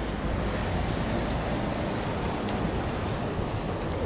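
Steady outdoor background noise: an even low rumble with a hiss over it, and no distinct events.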